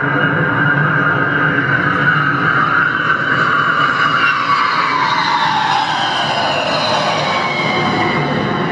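Loud recorded pass-by played over a 'Moving Sound' exhibit's speakers: a steady rumble with tones that slide down in pitch over the second half, like a vehicle going past.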